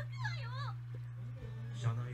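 Faint voices of animated characters playing at low volume: a high, whiny voice sliding up and down in pitch in the first half second or so, then a lower voice near the end, over a steady low hum.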